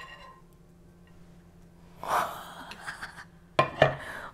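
A woman's breathy gasp about halfway through, then two sharp knocks near the end as the nonstick crepe pan is set back down on its electric base.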